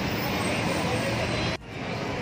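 Street noise: a steady wash of traffic with indistinct voices, broken by a sudden short drop about one and a half seconds in, after which it picks up again.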